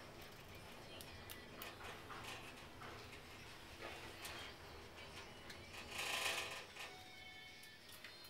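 Passenger lift car travelling upward: a quiet, steady low hum of the ride with faint clicks, and a brief louder rushing noise about six seconds in.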